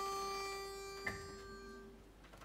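Pitch pipe sounding one steady reed note, giving a barbershop chorus its starting pitch before a song; the note fades out near the end.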